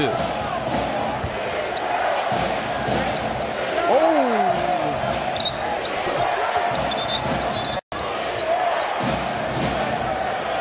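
Arena crowd murmur with a basketball dribbled on a hardwood court and sneakers squeaking. A voice calls out briefly about four seconds in. The sound cuts out for an instant just before eight seconds.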